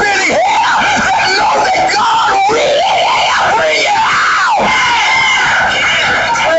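A man preaching in a shouted, high, strained voice, long arching cries running on without a break.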